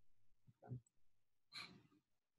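Near silence, broken by a man's soft sigh, a short breath out, about a second and a half in.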